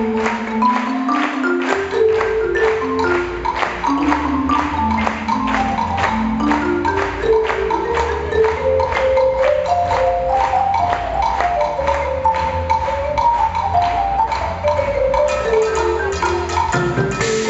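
Live percussion ensemble: marimbas play quick melodic runs that climb and fall, over a steady rhythm of drums and hand percussion.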